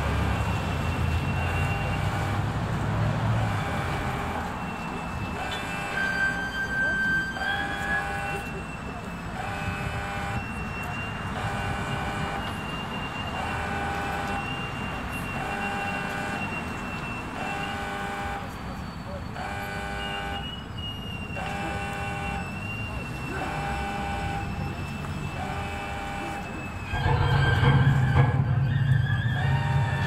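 A repeating electronic warning signal, a short chord-like tone sounding about every one and a half seconds, over steady street noise. A vehicle engine rumbles at the start and louder near the end.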